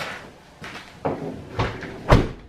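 A car's front door being pushed shut, with a dull thud about one and a half seconds in, among a few lighter knocks and rustles of movement at the car.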